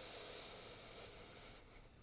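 A faint, slow inhale, a soft breathy hiss that fades away near the end: a breath taken in and held during an isometric hamstring contraction.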